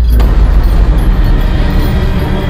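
Loud, low rumbling drone from a horror film's soundtrack, with a denser noisy layer coming in suddenly just after the start.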